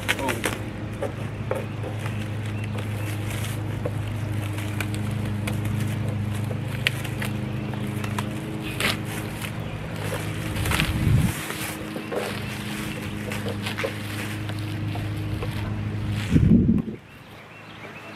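A steady low machine hum with scattered clicks and knocks over it. The hum stops abruptly about a second before the end.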